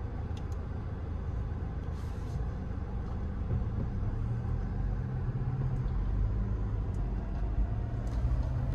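Steady low rumble of engine and road noise inside the cabin of a moving 2022 Infiniti QX50. A low engine hum grows slightly louder about halfway through.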